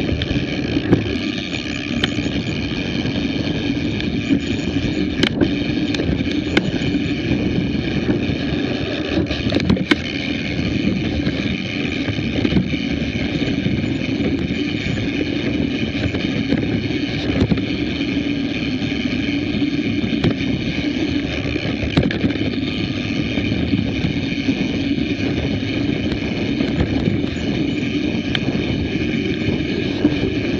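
Riding noise of a mountain bike on a dirt singletrack picked up by a bike- or rider-mounted action camera: steady rumble and rattle with wind on the microphone, broken by a few sharp knocks from bumps.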